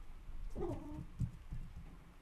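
A domestic cat meowing once, faintly, about half a second in.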